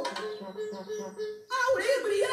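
A high voice singing a slow melody in held, wavering notes, with a short break and a louder new phrase about a second and a half in.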